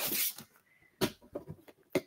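Frosted plastic 12x12 storage file being lifted and handled: a brief rustle, then a few faint, sharp plastic clicks and taps.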